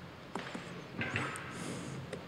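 A few faint, sparse key clicks on a computer keyboard as a command is typed in a terminal.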